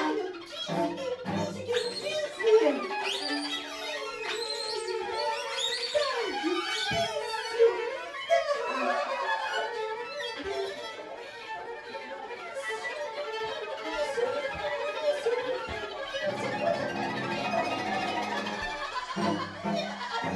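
Free-improvised music for viola, violin, cello and a woman's voice: bowed strings play sliding, shifting pitches while the woman sings. Lower cello notes come in about sixteen seconds in.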